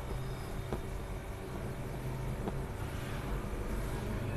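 Steady low background hum with a faint noisy haze, broken by two faint clicks, about a second in and again past the middle.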